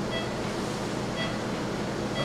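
Steady rushing background noise of operating-room equipment and ventilation, with two faint short electronic beeps about a second apart.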